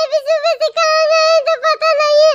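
A cartoon character's sped-up, very high-pitched voice crying in short, wavering wails, broken every fraction of a second, with one longer held cry in the middle.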